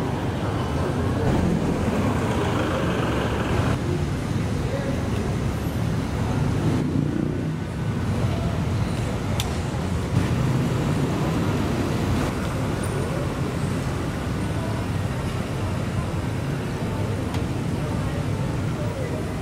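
Street ambience: steady road traffic with motor vehicles running past, and scattered voices of people nearby.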